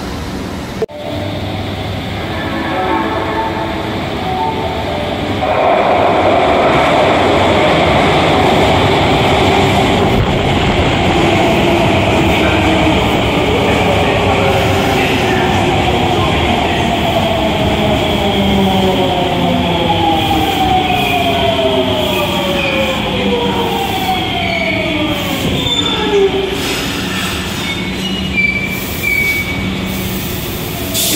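Osaka Metro subway train moving along the platform: motor whine and wheel noise, loud from about five seconds in. Around the middle, several tones start sliding steadily down in pitch over about ten seconds, and a sharp knock comes about a second in.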